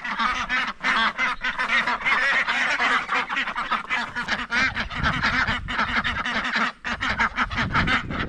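A flock of domestic ducks quacking continuously, many calls overlapping into a steady chatter.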